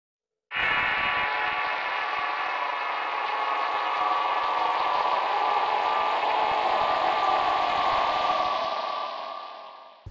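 Logo intro sound: a sustained ringing chord of many held tones that starts suddenly about half a second in and fades out over the last second and a half.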